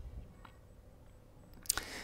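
Quiet room tone with a faint soft click about halfway, then a sharp, louder click and a brief rush of noise near the end.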